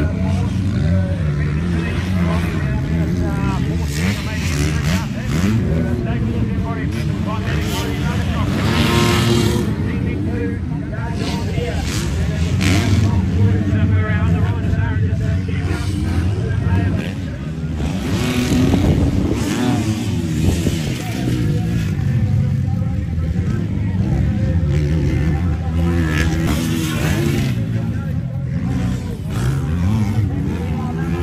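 Motocross bike engines revving and rising and falling in pitch as riders race round a dirt track. The bikes come by several times, loudest about nine, thirteen and nineteen seconds in.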